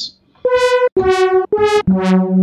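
Arturia CZ V software synthesizer, an emulation of the Casio CZ phase-distortion synth, playing four short notes of differing pitch in quick succession, the last one lower and held a little longer. Each note starts bright and mellows quickly as its DCW envelope falls.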